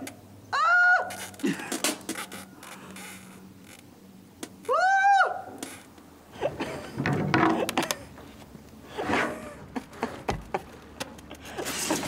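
A man's two short high-pitched excited squeals, one near the start and one about five seconds in, amid scattered knocks and rustling from the sealant-coated paper boat hull shifting against the dock as he settles into it.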